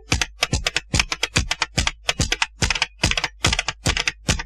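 Tap-dance steps: sharp shoe clicks with a low thump under each, about five a second in an uneven rhythm, heard alone in a break in the song's music.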